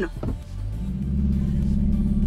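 Kia Forte GT hatchback's 1.6-litre turbocharged four-cylinder accelerating hard from a standstill on a launch, heard from inside the cabin. The low engine note builds steadily from about a second in.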